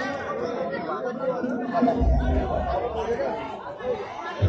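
Spectators' mixed chatter and overlapping voices around a Muay Thai ring, with a low thump about two seconds in.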